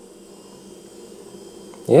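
Quiet room tone with a faint, steady hiss, then a man says "yeah" near the end.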